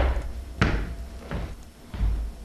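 Footsteps on an indoor staircase: three knocking steps, about two-thirds of a second apart, over a low steady hum.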